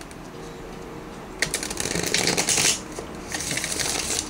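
A tarot deck being shuffled by hand: two runs of quick card flicks, the first starting about a second and a half in, the second shorter one near the end.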